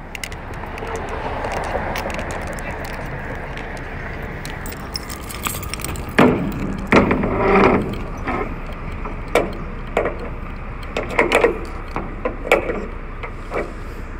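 Metal clinks and clanks from a semi-trailer's swing door and its hold-back latch being worked by hand, a run of sharp knocks mostly in the second half over a steady background rumble. The latch is not catching the door as it should.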